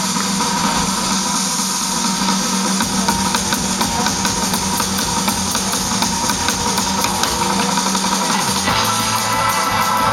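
Live surf-rock band playing an instrumental on electric guitar, bass and drum kit. A held note rings steadily under the band, and a lower part comes in about nine seconds in.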